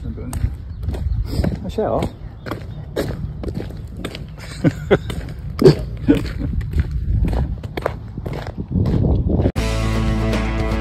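Footsteps and trekking-pole tips striking a gravel road, sharp clicks and crunches about twice a second. Background music cuts in suddenly near the end.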